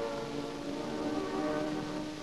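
Slow music of long held chords: several notes sound steadily together, swelling slightly about halfway and easing off at the end.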